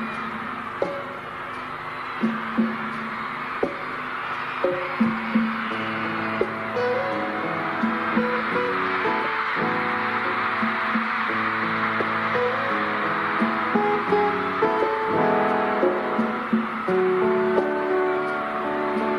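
Acoustic guitar picking a slow ballad introduction over held accompanying notes, with a steady wash of audience noise underneath.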